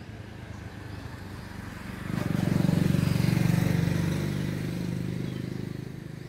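A motor vehicle engine passing by: it swells up about two seconds in, runs loudest for a moment, then slowly fades away.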